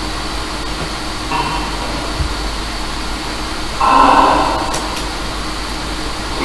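Afterlight Box ghost-box software playing a steady hiss of static, broken by short chopped snippets of sound: a faint one about a second and a half in and a louder, half-second one about four seconds in.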